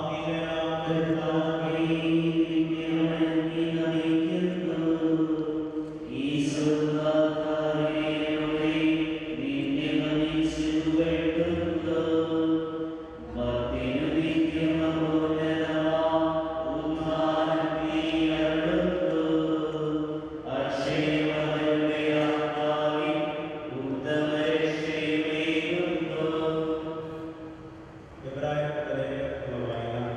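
A slow liturgical chant sung in long held notes, phrase after phrase, with short breaks between phrases every several seconds.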